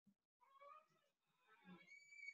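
Near silence, with only a very faint, wavering pitched sound in the second half.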